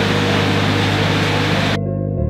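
A steady outdoor noise under background music with low sustained notes. The noise cuts off abruptly near the end, leaving only the music.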